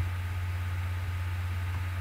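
Steady low hum with a faint hiss: the recording's background noise in a pause between words.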